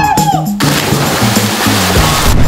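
A big splash as two people plunge into a swimming pool, starting about half a second in, with spray hissing for about a second and a half. Background music with a steady bass line plays throughout.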